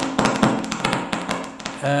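A rapid run of light taps or clicks, about ten a second, thinning out and fading near the end, over a faint steady hum.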